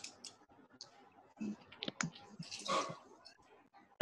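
Faint scattered clicks, with a brief soft breathy noise a little past the middle.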